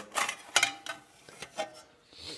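Sheet-metal lid of a homemade anodizer's enclosure being lifted off: a few light metallic clanks and scrapes.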